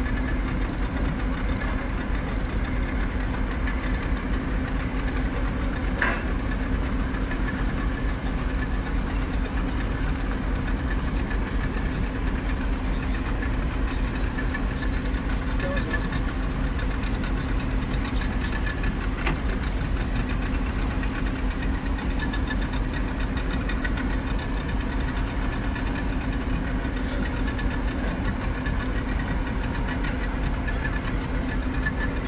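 Boat engine running steadily, a constant low drone with a steady hum.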